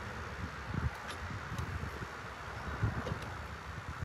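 Fairly quiet outdoor background: uneven low rumble of wind on the microphone, with a few faint clicks and soft knocks. No power saw is running.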